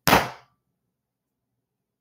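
A single hard thump, a stomp acting out a foot put down hard, at the very start and dying away within about half a second.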